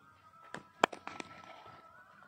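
About four sharp cracks in quick succession, the second by far the loudest, over faint steady tones like distant music.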